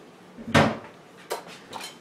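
Kitchen bowls and dishes being handled: one solid knock about half a second in as a bowl is set down, then two light clinks.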